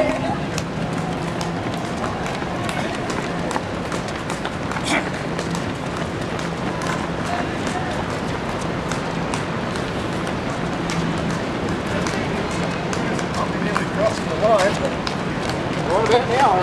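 Footfalls of a pack of marathon runners on an asphalt road, many quick irregular slaps over a steady outdoor hubbub of crowd and street noise, with voices rising near the end.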